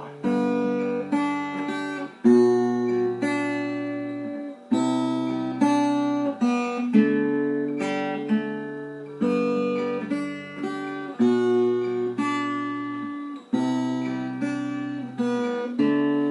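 Acoustic guitar playing a slow chord progression: a new chord struck about every two seconds and left to ring, with a few notes picked in between. The same chords repeat.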